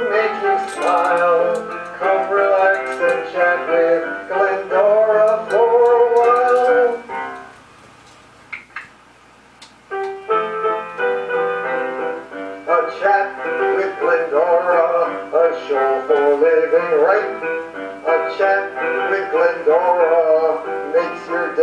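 A man singing his own song to his piano accompaniment. The music stops for about three seconds a little after seven seconds in, with a couple of faint clicks in the gap, then starts again.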